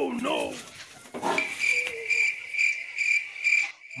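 Cricket chirping in a rapid, even pulse of high notes for about two seconds, starting just after a short spoken word and cutting off abruptly near the end.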